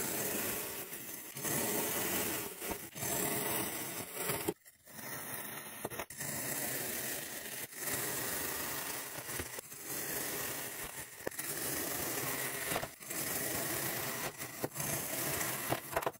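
A knife blade slicing through a block of kinetic sand makes a gritty, crunchy hiss. It comes as a series of cuts, each a second or two long, with short breaks between them.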